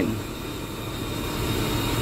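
Steady low machine hum with an even hiss and no distinct event.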